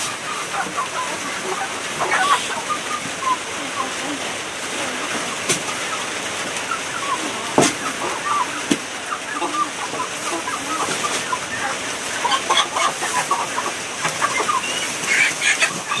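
Chickens clucking with short, scattered calls over a steady background hiss, and a few sharp clicks, the loudest about halfway through.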